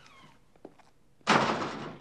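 A door banging, one sudden loud thump about a second and a quarter in that dies away over half a second, after a quiet stretch with a faint click.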